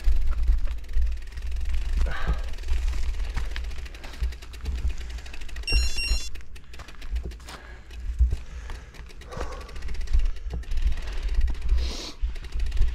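Bicycle riding over a dirt trail: rattles and clicks from the bike over the bumps, steady low wind rumble on the microphone, and the rider breathing hard. A brief high squeal comes just before the middle.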